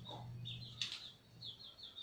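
Small bird chirping faintly in the background: short high chirps, with a quick run of several near the end, over a low steady hum.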